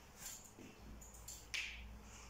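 A few faint, sharp clicks and taps, the loudest about one and a half seconds in.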